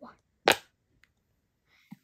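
A single crispy pop from a bubble on the side of a silicone UFO pop-it fidget ball pressed in by a thumb, about half a second in.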